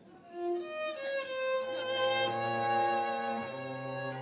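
Violin and cello begin a song together: a few short violin notes, then long bowed violin notes over a held low cello note. The harmony changes about three and a half seconds in.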